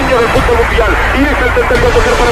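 Football commentary in Spanish, the commentator's voice raised and unbroken, over the continuous noise of a large stadium crowd.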